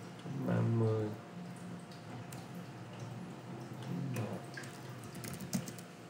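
Computer keyboard being typed on, a quick run of keystroke clicks near the end. A short murmured voice sound about half a second in is louder than the typing.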